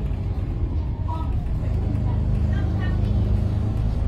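Steady low engine and road rumble inside a VDL SB200 Wright Pulsar 2 single-decker bus on the move, with faint passenger voices over it.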